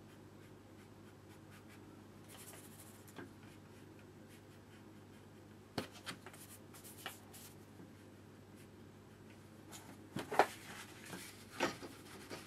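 Faint scratchy strokes of a flat brush on watercolour paper, then a sharp click and a run of louder rustles and taps near the end as a crumpled paper tissue is handled.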